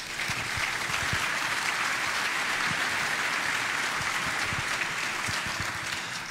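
Audience applauding steadily, a dense sustained clapping that starts as the speech breaks off.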